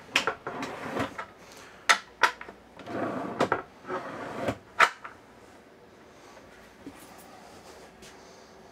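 Dinette tabletop being slid on its pedestal mount after its latch is released: sliding scrapes broken by several sharp clicks and knocks, stopping about five seconds in.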